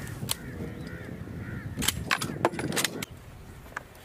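Sharp cracks of gunfire: one shot just after the start, then a quick run of four or five shots a little under two seconds in.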